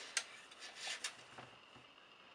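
Faint handling noise as a Corsair AX750 power supply's metal casing is turned over in the hands: a light click just after the start, then a few soft rubs and taps.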